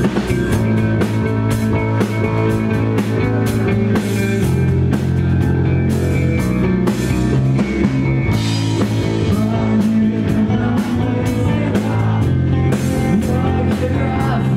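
Live rock band playing at full volume: electric guitar, bass guitar and drum kit, with a held bass line that shifts every few seconds under a steady beat of drum and cymbal hits.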